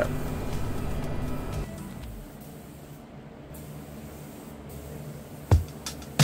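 Background music: held tones fade out over the first two seconds, then it goes quiet, and a beat with heavy low thumps comes in near the end.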